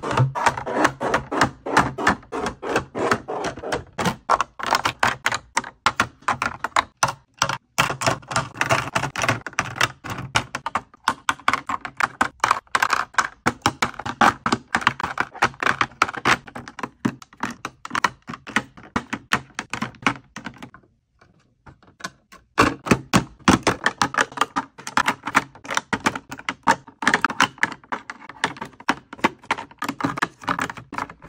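Rapid, irregular clicking and tapping of plastic lip-gloss bottles and makeup tubes being set into clear plastic drawer organizer trays, with a short pause about two-thirds of the way through.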